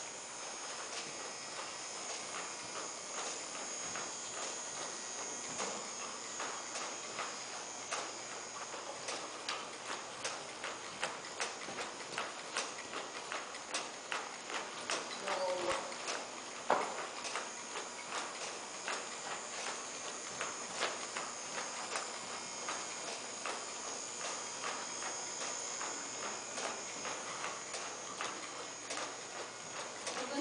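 Horse walking on the dirt footing of an indoor arena, its hoofbeats falling in a steady, even rhythm. One sharper knock stands out about halfway through.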